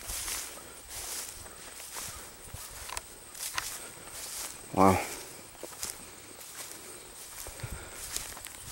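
Footsteps swishing through tall grass and leafy food-plot plants as someone walks, with repeated soft rustles.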